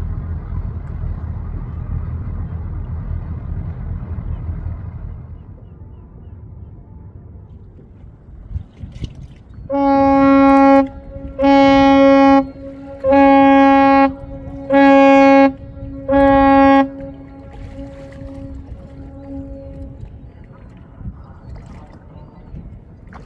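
Ship's horn of the small cruise ship Emerald Azzurra giving five loud blasts of about a second each, evenly spaced, as its departure signal, each blast echoing back. A low rumble fades out about five seconds in, before the blasts.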